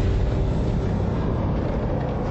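Steady low rumble.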